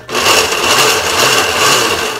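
Electric countertop blender running, puréeing corn kernels with oil and vinegar into a smooth dressing. The motor starts up just after the beginning and winds down near the end, its low hum wavering up and down about twice a second as the mixture churns.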